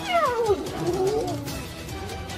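An animal's cry: one long wail that falls steeply in pitch, then rises again before fading, over background music.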